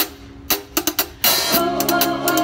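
Live drum kit: a few separate hits in the first second, then the full band comes in about a second in, with steady drumming, cymbals and sustained pitched instruments.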